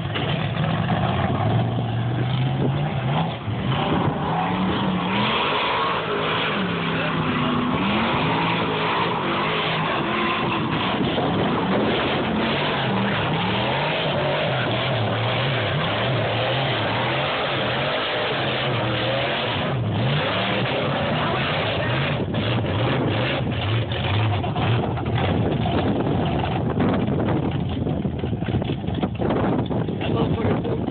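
Mud-bogging truck engines revving up and easing off over and over, the pitch rising and falling, as pickups churn through a sandy mud pit.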